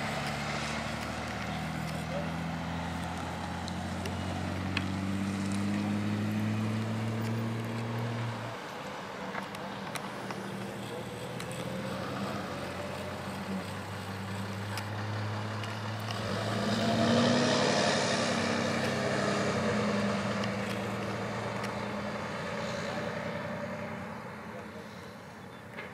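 Road traffic on a rural highway: vehicle engines hum steadily, and one vehicle passes more loudly about two-thirds of the way through.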